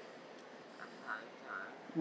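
Quiet room tone with three faint, short voice-like sounds from off-microphone, between about one and one and a half seconds in: a distant reply from the audience.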